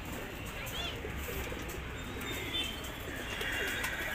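Domestic pigeons cooing steadily in a wire-mesh loft.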